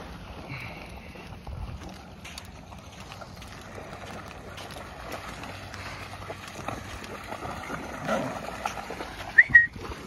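Dogs wading and splashing through shallow river water, over a steady hiss of wind and moving water. A brief high-pitched squeak near the end is the loudest sound.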